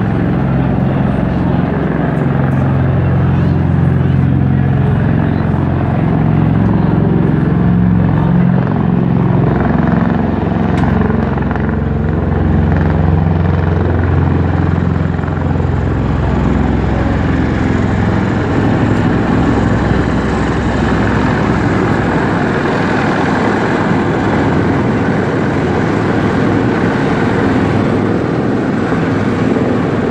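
Marine Corps MV-22 Osprey tiltrotor flying low overhead in helicopter mode: its two large proprotors make a loud, steady, deep drone. The low end of the drone is strongest for the first half and eases a little later on.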